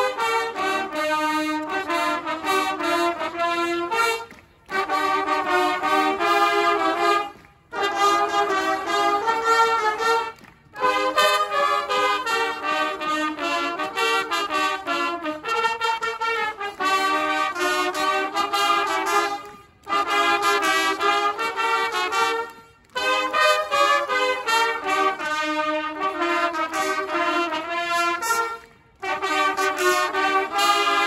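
A section of trumpets playing a piece together in harmony, in loud phrases a few seconds long broken by six short pauses.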